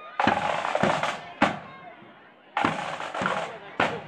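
Marching band drums beating out a march: sharp bass drum and cymbal strikes about every half second, with a quieter gap of about a second midway before the beat resumes.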